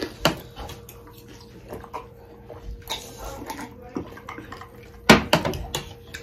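Spicy pork thukpa noodle soup being slurped and chewed close to the microphone: short, wet mouth smacks and slurps, with a louder burst near the end.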